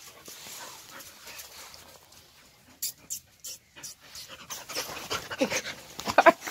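Australian Shepherd puppies panting and snuffling close to the microphone, with rustling and a cluster of sharp clicks about halfway through. Short pitched sounds start near the end.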